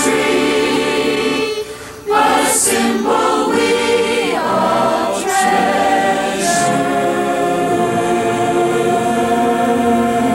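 A large group of adults and children singing a Christmas song together in chorus, with a brief break about two seconds in and a long held note near the end.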